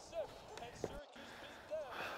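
Basketball game broadcast playing faintly on a television: a commentator talking over the game sounds. A sharp click comes a little before the middle, and the sound cuts out for a moment just after it.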